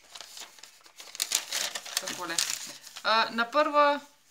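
A folded sheet of lined notebook paper rustling and crinkling as it is unfolded and smoothed flat on a tabletop, in a run of short crackles.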